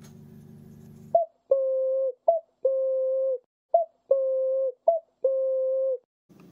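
A pitched sound effect played four times: each time a short, higher blip is followed by a long, steady lower tone of just under a second that stops abruptly.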